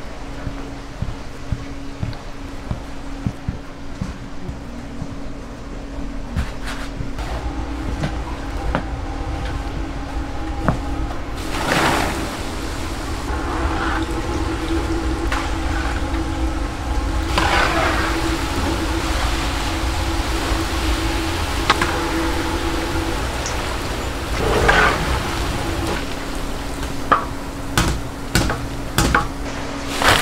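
Food-stall kitchen sounds: hot oil bubbling as glutinous-rice donut dough fries, with a steady low hum underneath. There are several louder surges of sizzling and scattered clicks and knocks of utensils, most of them near the end.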